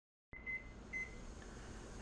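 Two short electronic kitchen-timer beeps, about half a second apart, the first a little longer, over a faint steady background hiss.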